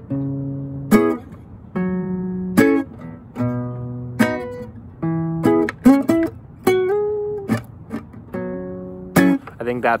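Acoustic guitar playing a slow improvised lead phrase in the C-sharp pentatonic scale: about a dozen plucked single notes and a few two-note shapes, each left to ring before the next.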